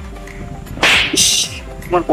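A whip-swish sound effect: one sharp hissing burst about a second in, lasting about half a second, over steady background music.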